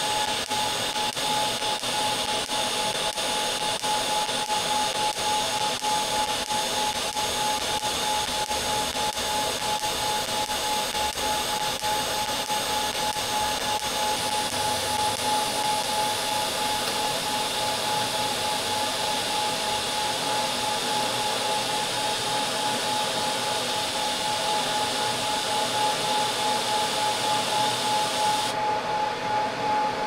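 TIG welding arc on a stainless steel tube, a steady hiss with a steady high whine. The arc's hiss cuts off near the end.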